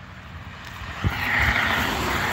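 A car passing on the road, its tyre and engine noise swelling about a second in and holding.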